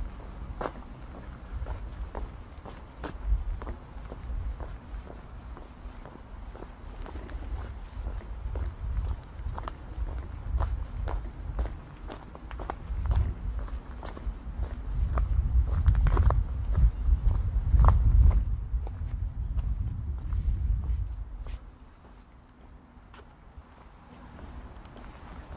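Footsteps of a person walking at a steady pace outdoors, about two steps a second, over a low rumble that swells in the second half and drops away about three seconds before the end.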